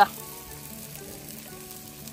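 Chicken pieces in a foil tray on a gas grill sizzling steadily, with soft sustained background music tones underneath.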